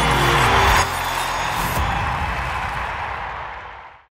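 Music ending: a falling sweep leads into a final hit a little under a second in, which then rings on and fades out.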